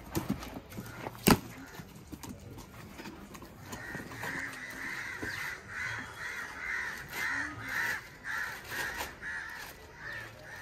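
A crow cawing over and over, about two calls a second, starting about four seconds in. A little over a second in there is a single sharp knock, amid rustling as a cardboard box is handled.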